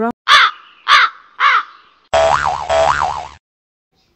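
Three crow caws, short and harsh and about half a second apart, then a warbling tone that rises and falls twice over hiss and cuts off suddenly.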